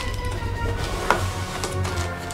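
Background music, with light crackling and clicking of plastic parts bags being handled; one sharper click about a second in.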